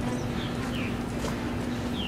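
A steady low hum, with a few short, falling bird chirps over it.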